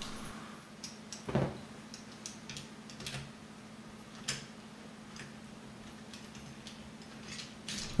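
Scattered light clicks and taps of hands handling the metal and plastic parts of a camera slider, as a small tripod head is set onto the slider plate and screwed on, with a sharper knock about a second in. A faint steady low hum runs underneath.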